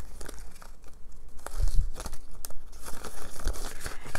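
Paper dollar bills and a clear plastic binder pouch rustling and crinkling in a run of short, irregular rustles as cash is handled and tucked into the pouch, with a soft bump about halfway through.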